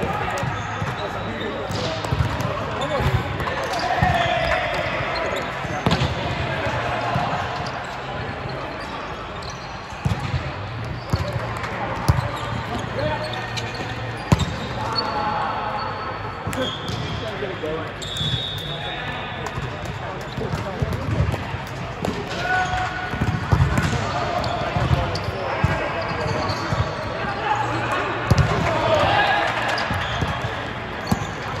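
Indoor volleyball play: many sharp smacks of volleyballs being hit and bouncing on the court, mixed with players' voices calling out, over a steady low hum in a large hall.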